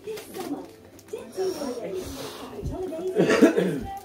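Wrapping paper rustling and tearing as a present is unwrapped, under low indistinct voices, with a cough, the loudest sound, about three seconds in.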